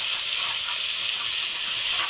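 Cauliflower and potato pieces frying in oil in a wok, giving a steady, even sizzle.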